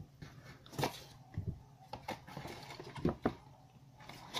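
A small cardboard product box and its inner tray being handled and lifted out, giving a run of irregular knocks, scrapes and rustles.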